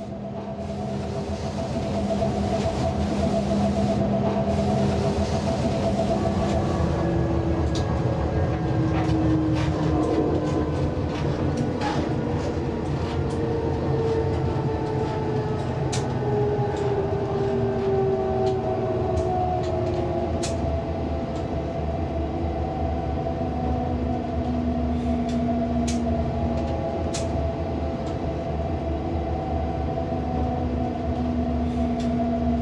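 A train running along the track, heard from the driver's cab: a steady rumble of wheels on rails with slowly gliding whines and occasional sharp clicks. It fades in over the first couple of seconds.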